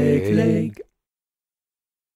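A cappella singing voices holding the final sung note of the song, cutting off suddenly less than a second in, after which the track is silent.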